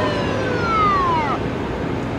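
Siren winding down: two overlapping wails slide downward in pitch, and the higher one falls away steeply about a second and a half in, over a steady rushing hiss.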